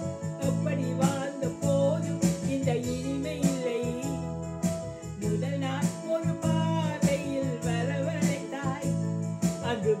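A woman singing a song to electronic keyboard accompaniment with a steady beat.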